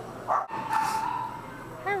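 A short animal call about a second in: a sharp, shrill burst with a brief steady tone.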